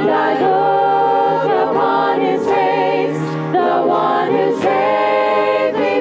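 Church congregation singing a hymn together, in long held phrases with short breaks between them.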